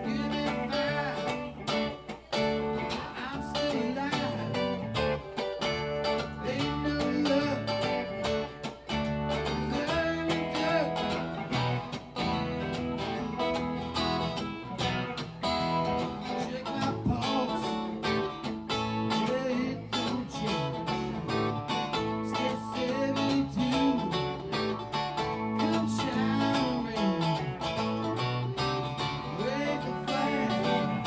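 Live band music: a strummed acoustic guitar with electric guitar and keyboard playing a song.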